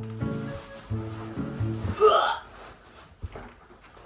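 Background music with steady chords. About two seconds in, a woman lets out a short, loud, strained cry as she heaves a heavily loaded backpack onto her back.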